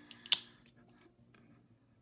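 A single sharp click about a third of a second in, over a faint steady hum.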